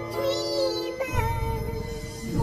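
Music: a high, chipmunk-style pitched-up voice singing a slow ballad, with held and gliding notes over a soft instrumental backing.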